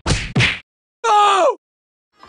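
Logo-intro sound effects: two sharp whacking hits about 0.4 s apart, then about a second in a short pitched sound sliding down in pitch for half a second.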